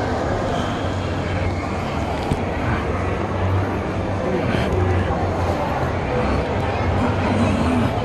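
Shopping mall crowd ambience: a steady background of indistinct voices.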